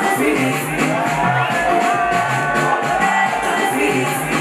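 Live concert music over a loud PA with a steady deep bass beat, a singer holding long notes into the microphone, and the crowd shouting along.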